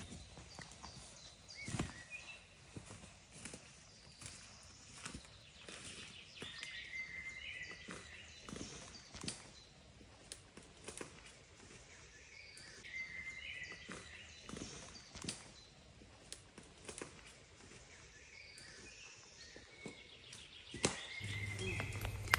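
Faint woodland birdsong: short chirping phrases come back every few seconds. Scattered soft rustles and small snaps of wild garlic leaves and stems being handled sound through it.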